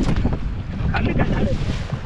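Wind rushing over the microphone on an open fishing boat at sea, with the wash of the sea around the hull.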